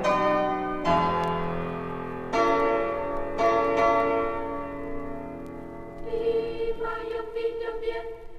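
Bell-like piano chords struck four times in the first few seconds, each left ringing and dying away. About six seconds in, high voices enter singing a held, pulsing note.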